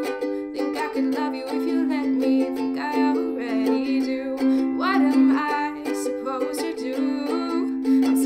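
Ukulele strummed in a steady rhythm, playing chords in an instrumental passage of a song.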